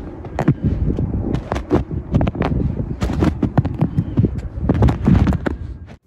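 Boots stepping through snow whose frozen crust cracks under each step: a quick, irregular series of sharp cracks and crunches that fades out near the end.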